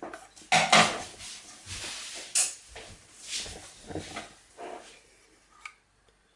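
Handling noises: a string of irregular rustles and soft knocks as the plastic detector housing is moved about in the hands, growing fainter, with one short sharp click near the end.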